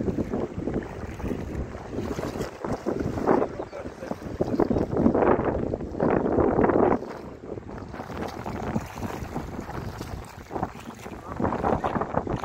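Wind buffeting a phone microphone, rumbling in gusts that are loudest about five to seven seconds in, over the swish of feet wading through shallow river water.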